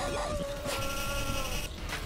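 A man screaming in agony as he rips chain hooks out of his flesh: one long, held cry that breaks off near the end.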